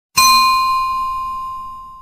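A single bright bell-like ding from a logo sound effect, struck once just after the start and ringing down steadily, with a clear main tone and many higher ringing overtones.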